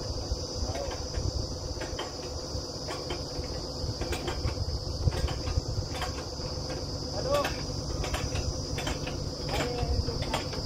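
Truck-mounted borewell drilling rig running: a steady low rumble with a steady high-pitched whine over it and light knocks about once a second.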